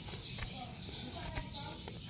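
Faint scraping and a few light clicks of a knife peeling the bark from the base of a water apple (jambu air) stem cutting.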